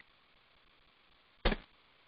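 Faint steady hiss, broken about one and a half seconds in by a single short thump that dies away quickly.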